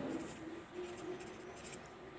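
Ballpoint pen writing on paper on a clipboard: faint scratching strokes as a word and a number are written.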